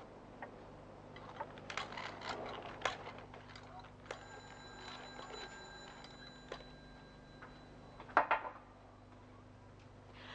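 A wooden pepper mill grinding in short crackly bursts, then a bell ringing steadily for about two and a half seconds and stopping, with a brief clatter near the end.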